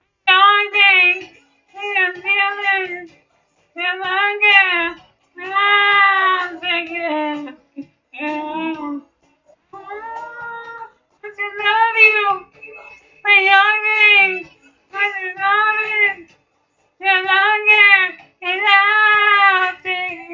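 A man singing unaccompanied in a high voice, in short phrases of one to two seconds with wavering held notes and brief pauses between them.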